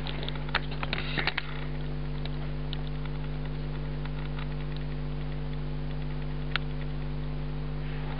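Steady electrical hum with a few light clicks in the first second and a half and one more click about six and a half seconds in.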